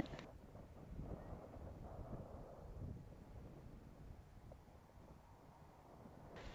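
Faint, steady low rumble and hiss, close to silence, fading slightly towards the end.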